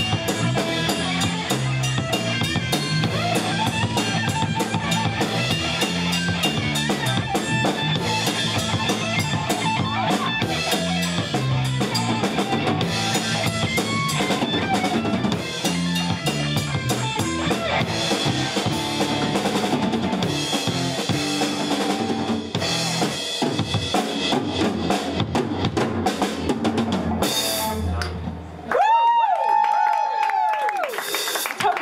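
A live rock band plays an instrumental passage on electric guitar, electric bass and drum kit, with busy drumming. Near the end the band breaks off, and one loud, held electric guitar note rings out, bending up and down in pitch.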